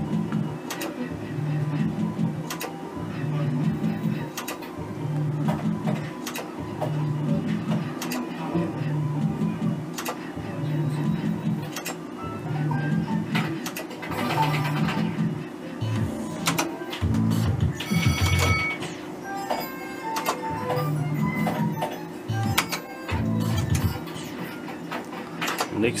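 Merkur 'Up to 7' slot machine running repeated spins: a short electronic jingle repeats about once a second, with sharp clicks as the reels spin and stop, over a steady electrical hum.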